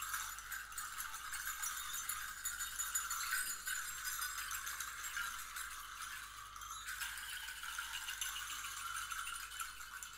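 Handheld percussion rattles shaken by the players, a steady, dense, high jingling rattle with almost no low end; its texture changes about seven seconds in.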